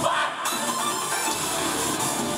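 Live rock band playing loudly on stage, with electric guitar in the mix.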